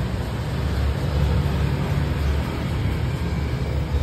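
A steady low rumble, with no single event standing out.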